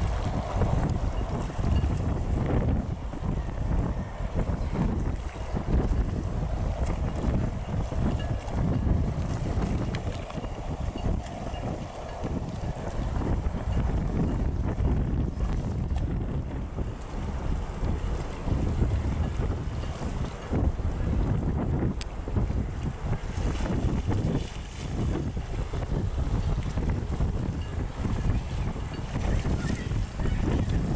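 Wind buffeting the microphone beside open water: a low, gusty noise that swells and drops every second or two throughout.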